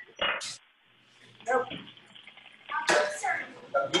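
Speech: a few short spoken phrases with pauses between them.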